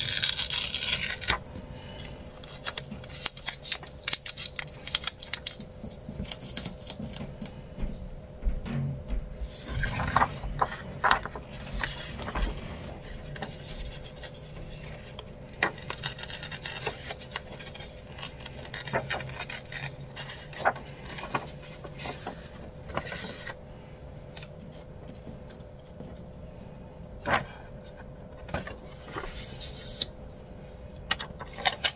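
Paper sticker sheets and planner pages being handled: rustling, light scrapes and taps as stickers are peeled and pressed down, over a faint steady hum.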